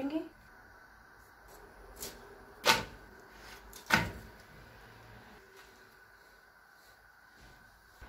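A flatbread being turned over on a nonstick tawa (griddle): three short knocks against the pan, the loudest about two and a half seconds in and another near four seconds, over a faint steady background.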